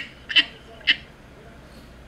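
A man's stifled laughter: two short squeaky bursts about half a second apart within the first second.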